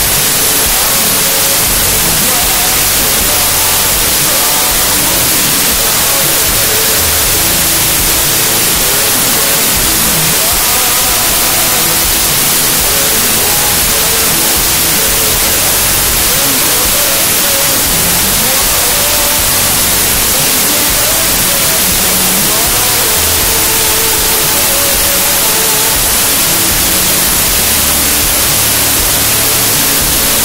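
A loud, steady static-like hiss covering everything, with a Christian worship song, a singing voice over accompaniment, faintly audible beneath it.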